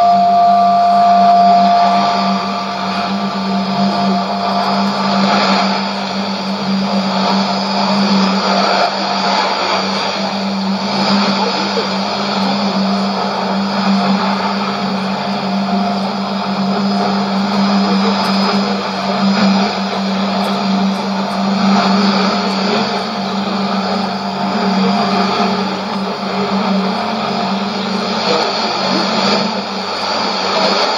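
Shortwave AM reception on 5990 kHz through a Sony ICF-2001D receiver's speaker: static and a steady low hum, with two steady test tones near the start that fade after about five seconds. A fainter tone lingers until near the end. Two transmissions share the channel, a test from the Nauen transmitter and China Radio International's Russian service from Hohhot.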